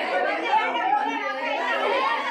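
A group of women chattering at once, many voices overlapping without a break.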